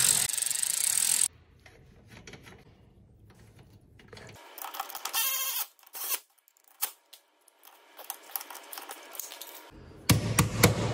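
Hand socket ratchet on a long extension clicking rapidly as a bolt on the winch mounting bracket is turned, loud for about the first second. Then it goes quieter, with scattered small metallic clicks and a short run of rapid clicking about five seconds in.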